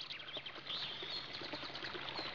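Faint birdsong: small birds chirping in short, scattered calls over a light background hiss.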